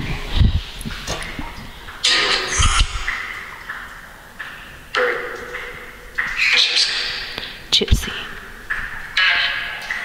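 Necrophonic spirit-box app playing through a small speaker: chopped fragments of voice-like radio sound and static, each starting and cutting off abruptly every second or two. Several short low thumps come in between.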